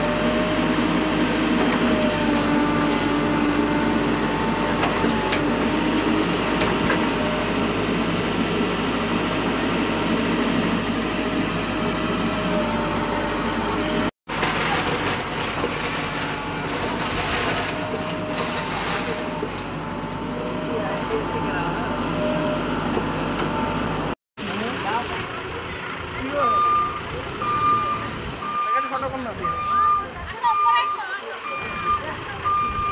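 Mahindra EarthMaster backhoe loader's diesel engine running under working load, with crowd voices. In the last few seconds its reversing alarm beeps steadily, about once a second.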